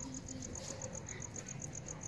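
Crickets chirping in an even, fast pulse of about seven chirps a second.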